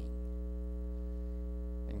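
Steady electrical mains hum, a low drone with a ladder of higher steady tones above it, carried through the pause between spoken phrases.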